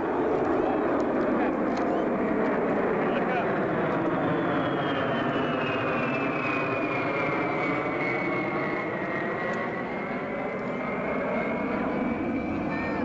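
Jet noise from a Boeing KC-135E Stratotanker's four turbofans, with a fighter on its refuelling boom, flying past overhead. A steady rumble runs under a high whine that falls in pitch over several seconds as the aircraft pass, then levels off.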